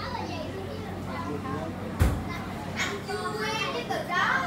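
Indistinct background voices of people talking, with a sharp knock about two seconds in over a steady low hum.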